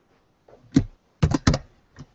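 Computer keyboard keystrokes picked up close to the microphone: one sharp keypress, then a quick run of four or five more about half a second later.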